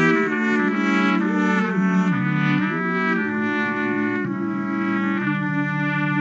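Trumpet playing a slow, legato melody over lower held notes, so that several pitches sound at once.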